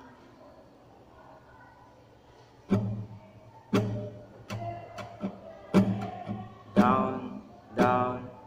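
Classical guitar strummed in a rhythmic down-and-up strumming pattern, each chord stroke sharp and left ringing. It comes in about two and a half seconds in after a quiet start.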